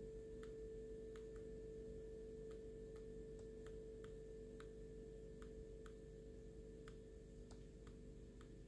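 Faint, irregular clicks of a computer mouse scroll wheel, about one or two a second, as image slices are stepped through, over a faint steady hum.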